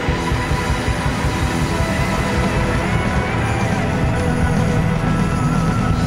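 A live rock band playing a loud instrumental passage without vocals: electric guitar over drums with crashing cymbals, bass and keyboard.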